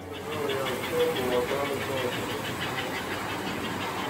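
An electric model train running around its track: a steady whirring and clattering with a quick, even ticking, and voices faintly in the background.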